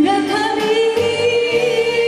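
A woman singing a Japanese enka song: her voice rises into one long held note.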